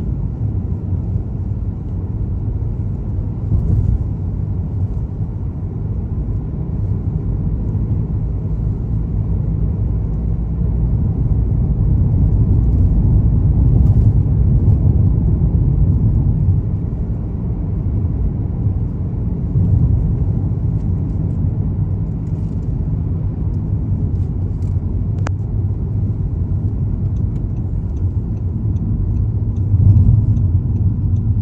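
Steady low rumble of a car's road and engine noise heard from inside the cabin while driving. A single short click sounds near the end.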